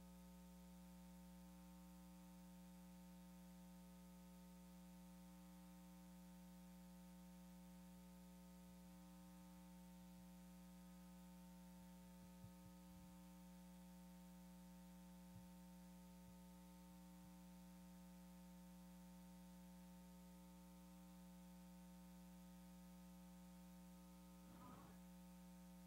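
Near silence: a faint, steady electrical hum, with a few faint clicks about halfway through.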